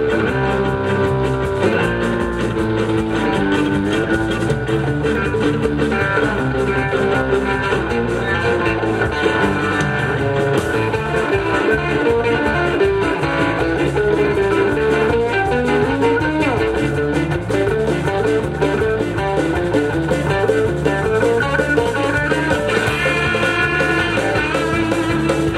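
Live rock band playing an instrumental passage: electric guitar picking quick runs of notes over electric bass and drums.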